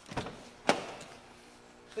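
A car's rear door being opened: a short rustle, then a sharp latch click just under a second in, the loudest sound, followed by a fainter click.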